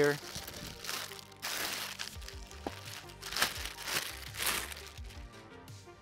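Clear plastic packaging bag crinkling in several bursts as a jacket is pulled out of it and the bag is handled.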